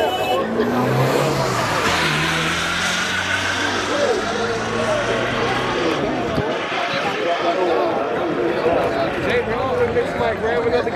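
A pickup truck's engine running as it drives past, fading out about six seconds in, under voices of people talking and calling out.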